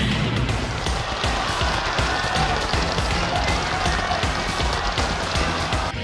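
Background music with a dense, steady wash of noise under it.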